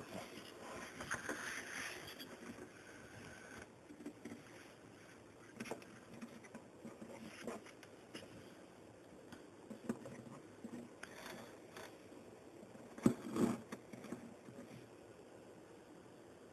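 Faint handling noises: light rubbing and scattered small taps and clicks, with a sharper knock about 13 seconds in.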